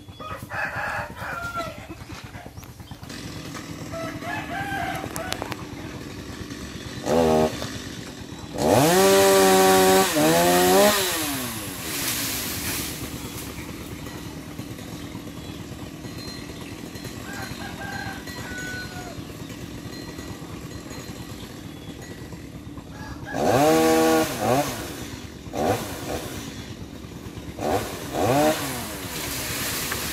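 Chainsaw idling, revved briefly, then run at full throttle for about two seconds around nine seconds in, rising in pitch and gliding back down to idle. It runs up to full speed again near 24 seconds, followed by a few short throttle blips.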